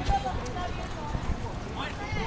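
Footsteps of a group of people walking on a concrete sidewalk, irregular low thumps, under indistinct background voices.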